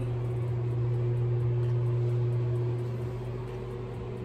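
Steady low hum of a bathroom exhaust fan running.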